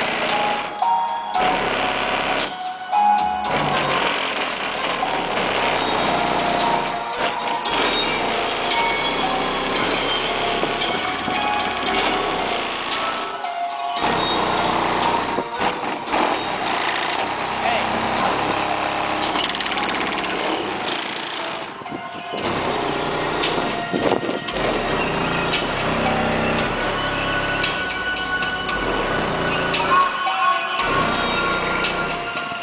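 Loud music with vocals played through a car audio system with two 15-inch subwoofers on about 3000 watts, heard from outside the car, with short breaks in the song.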